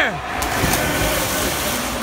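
A swimmer's dive into a pool: a splash about half a second in, then steady churning and splashing of water as he kicks and strokes.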